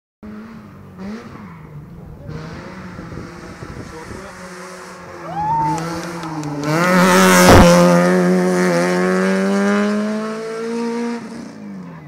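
Citroen Saxo rally car's engine coming through a hairpin, with a short rise in revs as it takes the bend. It is loudest as it passes close by about seven seconds in, then pulls away under hard acceleration, the pitch climbing slowly as the sound fades.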